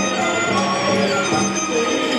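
Instrumental backing track of a Cantonese song playing through a portable speaker-amplifier, a passage between sung lines, with sustained melodic notes over a steady accompaniment.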